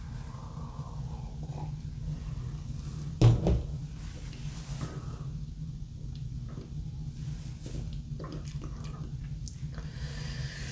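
Quiet room tone with a steady low hum, broken by a single dull knock about three seconds in.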